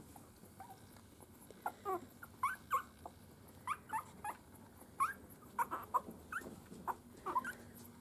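Young miniature schnauzer puppies squeaking: a string of short, high, upward-sliding squeaks, about two a second, starting a couple of seconds in.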